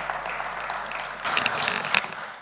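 Applause from a seated audience of deputies: many hands clapping in a dense patter that grows louder just past a second in.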